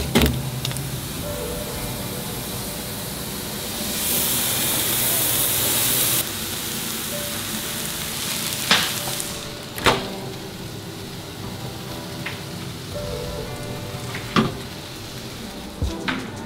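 Ground venison with peppers and onions sizzling in a frying pan, the sizzle rising louder for about two seconds partway through. A few sharp knocks stand out, with quiet background music underneath.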